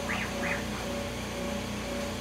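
Benchtop CNC router humming with its vacuum pump running as the spindle head is jogged into position over the vacuum table. A low pulsing tone repeats about twice a second, with two short high chirps near the start.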